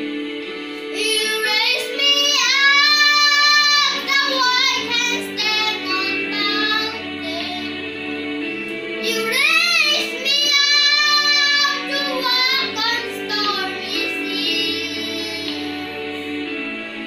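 A young boy singing a solo over a backing track of held chords with a low bass line. The voice enters about a second in and sings in phrases with long held notes that bend in pitch.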